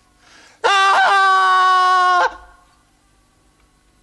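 A loud, steady, high-pitched held tone lasting about a second and a half, starting just after half a second in and cutting off sharply.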